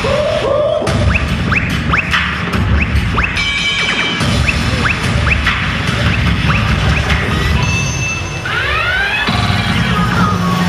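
Cheerleading routine music mix played loud: a heavy beat overlaid with short rising sweep effects repeating about twice a second and crash-like hits. It breaks to a brief steady tone passage near the middle and a cluster of swooping glide effects near the end.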